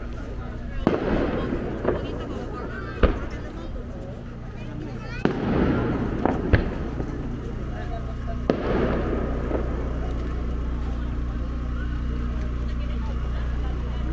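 A fireworks display: about six sharp bangs in the first nine seconds, the bigger ones trailing off over about a second, then only a steady low background.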